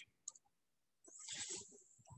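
Near silence broken by a single faint click about a third of a second in, typical of a computer mouse click advancing a presentation slide, then a soft, brief sound a little after the first second.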